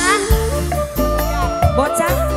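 Live pantura dangdut band music over the stage sound system: a steady bass and a regular drum beat under a bending, sliding melody line.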